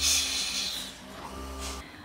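Steam iron hissing as it presses folded cloth-mask fabric, strongest in the first second and fading away over a low steady hum.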